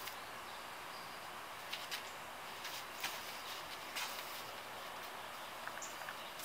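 Faint, scattered short rustles and clicks of a stiff rope being handled and worked into a knot, over a steady quiet outdoor hiss.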